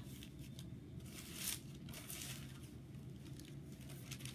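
Paper pages of a Bible being turned and rustled, a few soft crinkling sounds, over a faint steady low hum.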